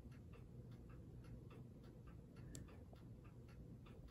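Near silence with a faint, even ticking, roughly four to five ticks a second.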